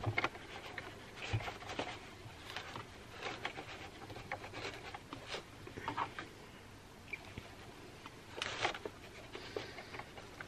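Soft rustling and scattered light clicks as fabric is handled and repositioned at a sewing machine, coming irregularly with no steady stitching rhythm.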